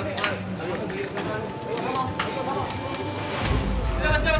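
Indistinct voices of people talking among themselves, with scattered sharp clicks and knocks. A low steady hum starts near the end.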